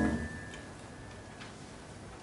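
A grand piano chord dying away, one high tone lingering for about a second and a half, then a quiet pause in the music with two faint clicks.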